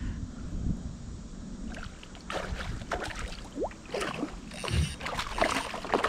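A hooked chain pickerel thrashing and splashing at the surface beside a kayak, with scattered splashes and knocks from about two seconds in and one low thump near five seconds.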